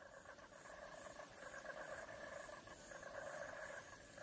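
Faint, steady outdoor ambience with a dense, fine chirring texture, growing slightly louder over the few seconds.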